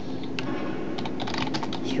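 Computer keyboard typing: a lone keystroke, then a quick run of key clicks from about a second in.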